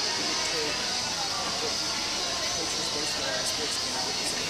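Large indoor hall ambience: a steady hiss with indistinct voices and faint background music.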